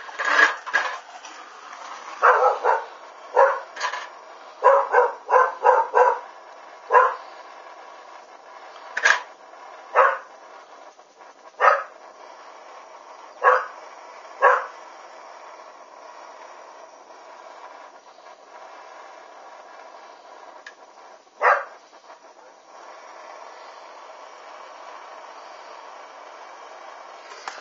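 A dog barking in short single barks, a quick run of them in the first seven seconds, then spaced out, with the last one about twenty seconds in, over a steady background hiss.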